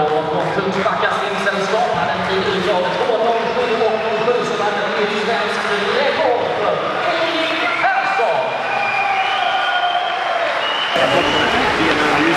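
A voice over a public address system, echoing in a large hall, with some applause; the sound changes abruptly about eleven seconds in.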